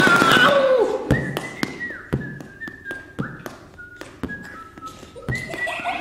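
Thin sticks tapping a taut rubber balloon in a run of taps. A high whistling tone is held between the taps and steps to a new pitch with each one, often dropping away at its end. A short gliding vocal cry opens it.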